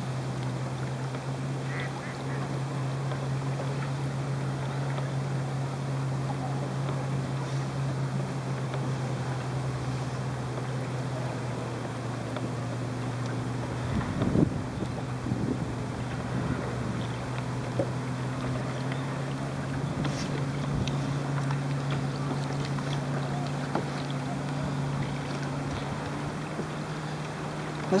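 A steady low drone on an even wash of water noise while a kayak moves across a lake, with a short cluster of knocks about fourteen seconds in.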